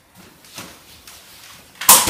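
Jané Epic pushchair's folding frame being raised from folded to upright, with faint handling rattles and then one loud, sharp clack near the end as the frame snaps open.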